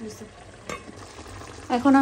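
Onion-and-spice masala frying in oil in a pan, stirred with a wooden spatula, with one sharp knock about two-thirds of a second in. A woman's voice starts near the end.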